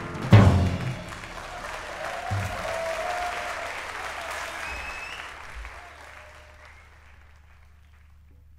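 A jazz piano trio of piano, double bass and drums ends a tune on a loud final hit, followed by audience applause with a few whistles that fades away over about six seconds.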